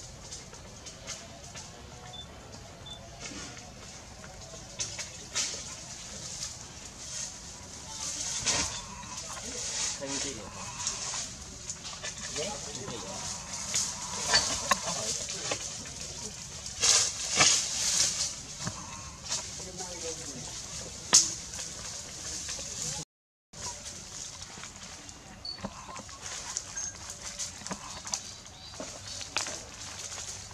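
Dry leaf litter rustling and crackling, with clusters of louder crackles in the middle, alongside a few faint intermittent calls.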